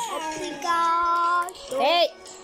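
A childlike singing voice. It slides between notes at first, holds one steady note for nearly a second in the middle, then swoops up near the end.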